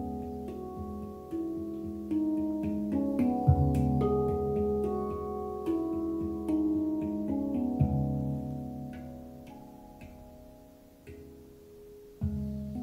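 Handpan played with the fingertips: single steel notes struck and left ringing so they overlap in a slow melody. Deeper bass notes sound about three and a half seconds in and again near eight seconds, and the playing fades away near the end.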